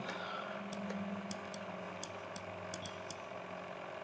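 Quiet room tone: a low steady hum with a few faint, light ticks scattered through it.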